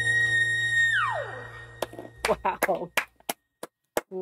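A male singer holds a very high whistle-register note over a ringing acoustic guitar chord. About a second in, the note slides down and dies away. Scattered hand claps and short excited exclamations follow.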